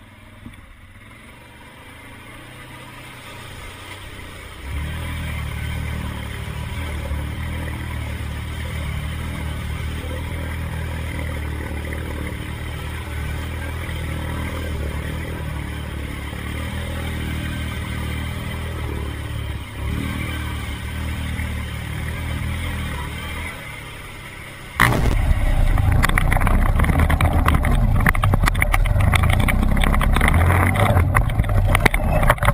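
Yamaha Grizzly 700 ATV's single-cylinder engine running under load as it churns through muddy water, muffled by a waterproof camera housing. About 25 seconds in the sound jumps suddenly to a much louder engine with many knocks and rattles.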